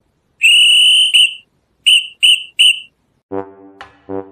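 A high-pitched whistle: one long blast of almost a second, a short toot right after, then three short toots. Near the end a low, brass-like musical note begins.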